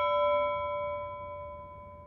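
A single bell-like chime note of a logo sting, ringing and slowly dying away.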